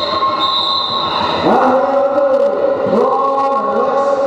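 A long, high whistle tone in the first second and a half as the jam starts. Then roller skate wheels squeal on the wooden sports-hall floor as the pack skates off, with sliding, wavering squeals.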